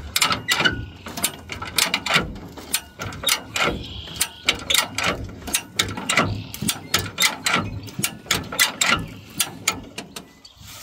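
A 1960 Ford original-equipment ratchet bumper jack being worked by its handle, its pawls clicking in a quick, uneven run as it lifts the rear of the car.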